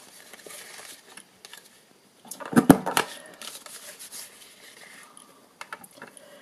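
Green cardstock handled and fitted into a tabletop corner-rounder punch (Corner Trio punch), the paper rustling and scraping, with one sharp click a little before halfway and a few lighter clicks near the end.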